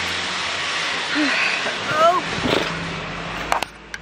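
Steady outdoor background noise with wind on the microphone, then a few sharp clicks of a car door near the end, after which the outside noise drops away.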